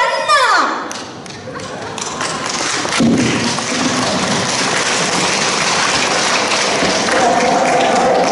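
A sung note slides down and ends. About three seconds in there is a thump, then audience clapping and chatter build in a large hall. A steady held tone, likely music starting, comes in near the end.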